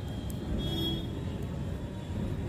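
Low, steady background rumble with no distinct events, with a faint brief tone a little under a second in.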